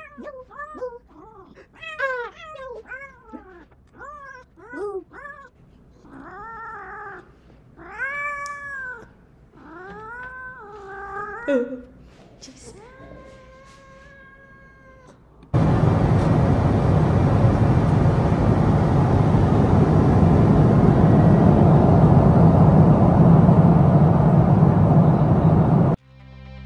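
Domestic cat meowing repeatedly, held close to a microphone: a run of short meows, then longer wavering ones and one long drawn-out call. About fifteen seconds in, this gives way to a steady, loud rushing noise.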